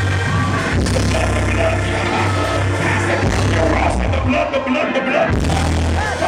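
Loud live church music with a heavy bass line and hits, and voices singing and shouting over it. The bass drops out for about a second near the end, then comes back.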